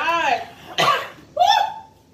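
Women's wordless cries, two drawn-out vocal sounds with a single cough between them about a second in: reactions to the burn of a very hot pepper sauce.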